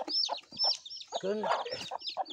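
Newly hatched chicks peeping continuously, a rapid string of high, falling cheeps.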